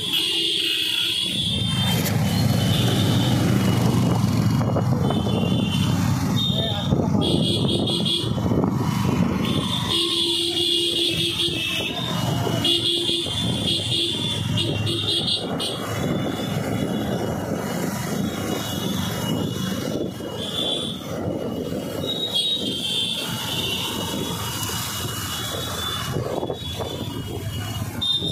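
Several motorcycles riding along together, their engines running under a steady low rumble of wind on the microphone from the moving bike; short high-pitched tones come and go over it.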